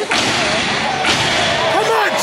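A step team's unison stomps and hand claps on a stage, two sharp strikes about a second apart, with a crowd shouting behind.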